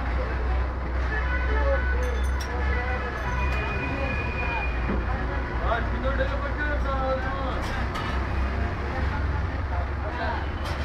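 Indistinct voices talking over a steady low rumble of street traffic.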